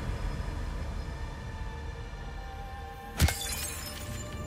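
Logo-intro sound design: a low rumbling drone with faint held tones, then a sharp glass-shattering hit a little after three seconds in, ringing out afterwards.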